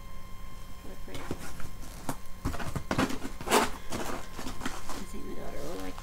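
Clear rigid plastic packaging being handled: a run of clicks and crackles, the loudest about three and a half seconds in.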